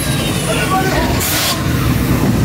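Car-chase soundtrack played loud through an attraction's speakers: deep engine rumble with voices over it, and a short burst of hiss a little over a second in.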